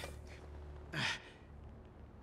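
A man's short, pained exhale about a second in, falling in pitch.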